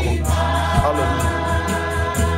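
Gospel worship music in a church: voices singing long held notes over sustained chords and a steady low bass.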